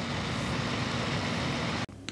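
Noctua NH-D9L Chromax Black CPU cooler's 92 mm fan running at 100% speed: a steady rush of air with a low hum, audible but not really loud. It cuts off abruptly near the end.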